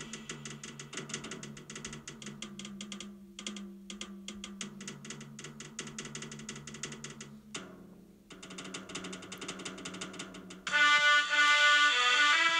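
Jazz recording: a drum kit playing quick, busy strokes over low held notes, with a brief break about two-thirds through. Near the end a much louder pitched instrument comes in with held melody notes.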